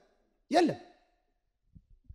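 A man's short sigh-like exhalation through the microphone, falling in pitch, about half a second in, followed by a pause.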